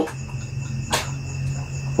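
Crickets trilling steadily over a low, constant hum, with a single sharp click about halfway through.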